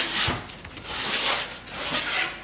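Plywood table-saw sled on hardwood runners sliding back and forth in the miter slots across the cast-iron table: a rubbing, scraping sound in about three strokes, with a light knock just after the start. The runners fit snugly with no play, and the sled slides freely.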